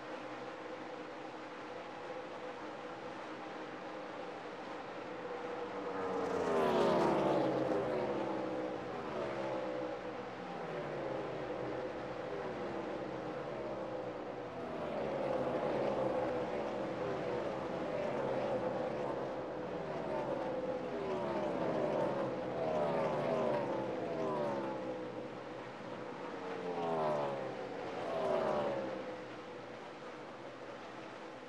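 NASCAR Cup stock cars' V8 engines running at racing speed: a steady engine drone, with repeated falling-pitch sweeps as cars pass by, the loudest about a quarter of the way in and twice near the end.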